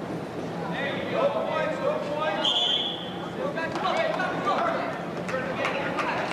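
Coaches and spectators shouting across a gymnasium at a wrestling bout, several voices yelling over each other, with one brief shrill sound about halfway through. Near the end come quick sharp claps or slaps.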